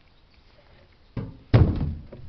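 Two dull thumps close to the microphone about a second in, the second louder and longer.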